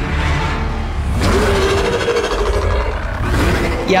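Movie soundtrack: dramatic music over a heavy low rumble, with a noisy swell about a second in and a held tone through the middle.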